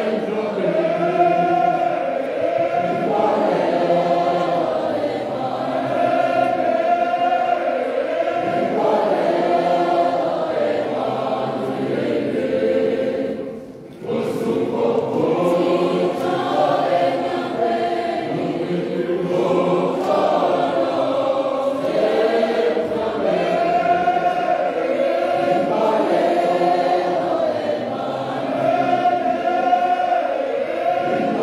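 Many voices singing a church song together in chorus, with a brief drop in the singing just before fourteen seconds in.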